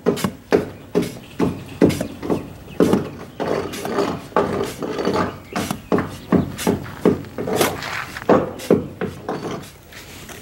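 Steel mortar hoe scraping and chopping through a dry mix of sand and rendering cement in a plastic tub, in repeated gritty strokes about one to two a second. The sand and cement are being mixed dry, before any water goes in.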